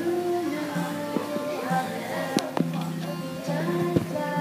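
A young girl singing a slow song into a microphone, accompanied by a strummed acoustic guitar.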